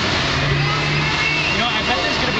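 Hobbyweight combat robots' motors running, with a steady hum for about a second, under loud spectator chatter and shouting.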